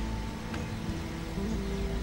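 A steady low rumble of outdoor background noise, with faint held notes of soft background music that shift pitch about one and a half seconds in.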